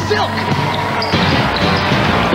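Basketball dribbled on a hardwood gym floor during play, over a rock music bed.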